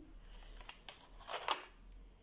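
Light clicks of a wooden pencil against a metal pencil tin as it is lifted out of its tray, with a short scrape and a sharper click about one and a half seconds in.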